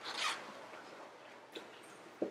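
A brief rustling scrape of a handheld microphone being handled, followed by faint room tone with one small click.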